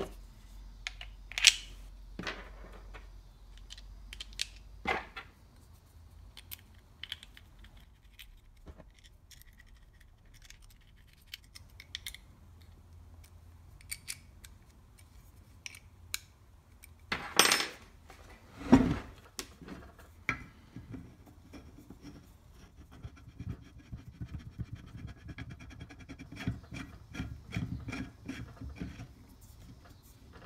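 Small metal parts (screws, a hex key, a machined aluminium adapter and a steel pneumatic cylinder) clinking, knocking and scraping on a wooden workbench as they are handled and fitted together. The knocks come singly and sparsely, with a run of quick light clicks near the end.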